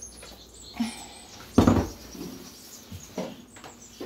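Quiet handling noises with a single sharp thump about a second and a half in.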